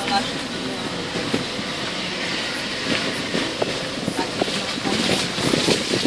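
Car driving over a rutted, muddy dirt road, heard from inside the cabin: steady road and engine noise with frequent knocks and rattles as it bumps along.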